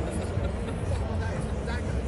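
Outdoor urban background: faint voices of people talking nearby over a steady low rumble.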